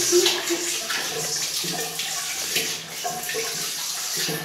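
Water running from a bidet tap into the ceramic bowl, splashing as a Weimaraner puppy laps at the stream.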